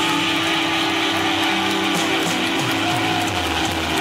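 Live rock band playing through a club PA, with held, sustained notes from guitar and bass.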